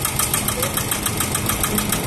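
Kubota ZK6 walk-behind tiller's single-cylinder diesel engine idling steadily, with an even beat of about ten firings a second.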